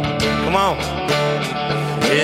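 Live worship band playing a rock-style song, electric guitars to the fore, with one note swooping up and back down about half a second in.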